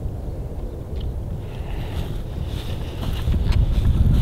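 Wind buffeting the microphone, an uneven low rumble, with a faint hiss joining about halfway and a few light clicks near the end.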